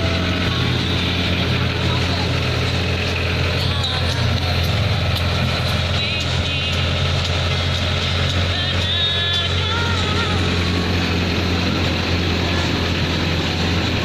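Engine of an open-sided zoo road train running at a steady low hum as it carries passengers, with faint chatter from riders and visitors in the background.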